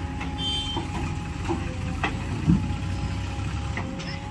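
JCB 3DX backhoe loader's diesel engine running steadily under load while the backhoe arm swings a full bucket, with a short thud about halfway through.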